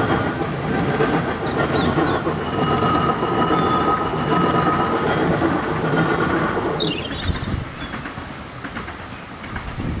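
Coaches of a 15-inch gauge miniature railway train rolling past, wheels rumbling and clattering on the rails with a thin squeal of wheels about three to five seconds in. The sound fades after about seven seconds as the last coach goes by.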